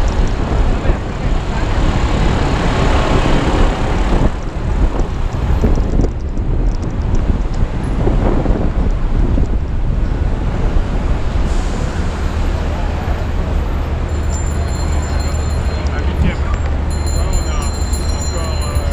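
Busy city street: traffic noise with a heavy steady rumble, and voices of passers-by mixed in.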